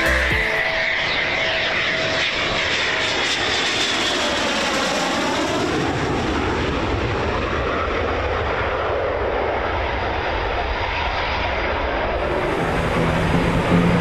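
Eurofighter Typhoon's twin Eurojet EJ200 turbofans at full power as the jet takes off and climbs away: a steady, dense jet noise, with a sweeping shift in tone around the middle as it passes.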